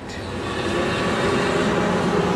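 Steady rushing noise of Niagara Falls' American Falls, the water's roar carried up to the overlook.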